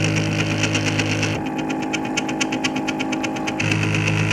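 Prusa i3 3D printer running a print: its stepper motors buzz and whine as the print head moves, over a steady hum, with a fast even ticking. The motor buzz drops out about a second and a half in and comes back near the end.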